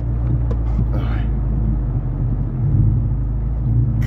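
Car engine running steadily, heard from inside the cabin while driving slowly over bumpy ground, with some low rumbling from the rough track about two and a half seconds in.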